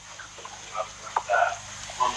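Faint, muffled voice sounds over a steady hiss, with a small click about a second in.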